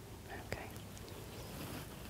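Faint, close breathing and clothing rustle as a person leans in close, with one soft click about half a second in.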